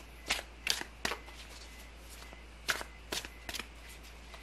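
Tarot cards being handled: six short crisp sounds in two groups of three, one group in the first second and the other about three seconds in.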